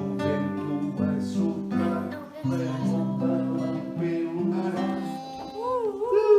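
Acoustic guitar strummed in changing chords, with no singing over it for most of the passage; a voice comes in near the end.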